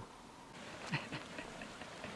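Faint outdoor background with two short, quiet chuckles about a second in, from a person laughing.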